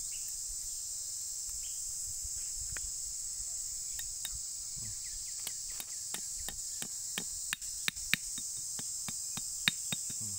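Light, sharp taps of a small hatchet on the wire trigger and padlock of a homemade trap, about two a second in the second half and loudest near the end, over steady high insect chirring.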